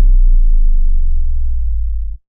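Loud, deep synthesized rumble of an outro logo sound effect. It holds steady, fading slightly, with a light crackle in its first moments.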